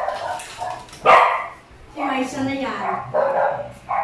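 A dog barking once, sharply, about a second in, with drawn-out whining calls that waver in pitch before and after it.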